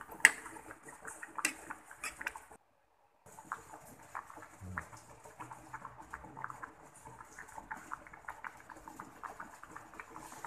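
A pot of papaya and guava leaves boiling in water with a little cooking oil: a steady run of small bubbling pops and crackles. In the first two seconds a few sharper knocks come from the spatula stirring against the pot, and the sound drops out completely for about half a second about two and a half seconds in.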